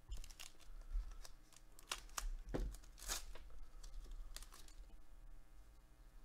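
Foil wrapper of a Panini Absolute football card pack being torn open and crinkled by gloved hands: a string of short rips and rustles, loudest in the middle, dying away near the end.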